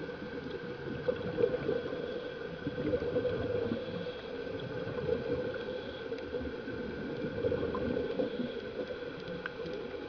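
Steady, muffled gurgling and bubbling water, with no clear breaks.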